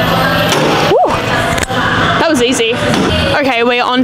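Background music playing, with a short rising-and-falling voice-like sound about a second in, then a woman talking from about two seconds in.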